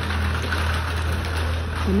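City street traffic noise: a steady low engine rumble with road noise.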